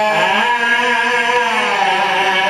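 A man's chanted recitation into a microphone, holding long sung notes that glide slowly in pitch and settle lower near the end.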